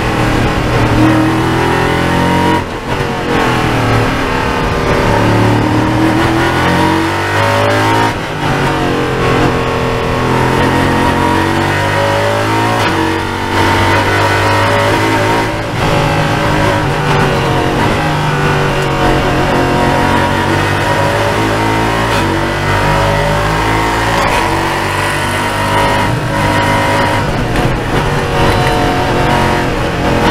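Ligier JS P320 LMP3 prototype's Nissan 5.6-litre V8 at racing speed, heard from inside the cockpit. It revs up and down through the gears, with several short breaks in the sound at the gear changes.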